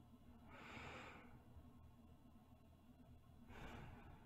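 A woman breathing slowly and softly close to the microphone, as in sleep: two faint breaths about three seconds apart.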